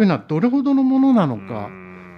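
Speech only: a person talking, drawing out one vowel for about half a second partway through.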